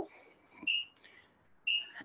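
A bird calling in the garden: two short, steady high whistled notes about a second apart.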